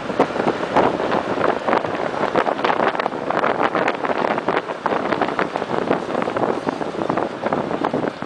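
Wind noise on the microphone of a camera filming from a moving vehicle: an uneven rush with many quick crackles.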